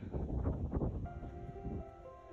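Wind buffeting the microphone in a low rumble, then background music with long held notes coming in about a second in.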